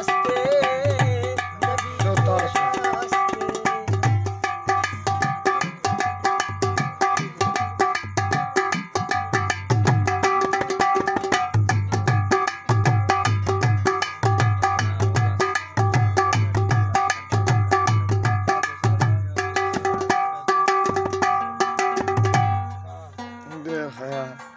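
Instrumental folk music: a rabab (plucked lute) holds steady melodic notes over a fast, even rhythm of hand-struck mangi, a pot used as a drum. The playing stops about a second before the end.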